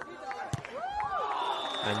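A beach volleyball struck by a player's hand in a rally, one sharp slap about half a second in, followed by a short call from a voice that rises and falls in pitch.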